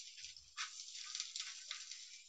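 Egg omelette frying in hot oil in a nonstick pan: a soft, irregular crackling sizzle.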